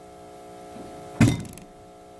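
A single thunk, like a knock on a table, a little over a second in, over a steady electrical hum in the room.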